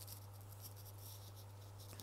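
Faint rustling of hands handling a crocheted yarn panel and loose yarn, over a steady low hum.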